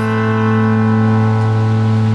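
A single acoustic guitar chord, struck hard and left ringing steadily as the final chord of a song.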